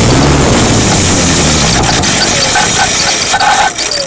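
Radio-controlled model's onboard camera rolling fast along an asphalt path: a loud rushing, rumbling noise of wind and wheels on the tarmac. Near the end a falling motor whine sounds as the model slows to a stop.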